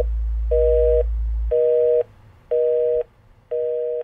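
Telephone busy signal: a steady two-note tone beeping about once a second, half a second on and half a second off. A low drone underneath stops about a second and a half in.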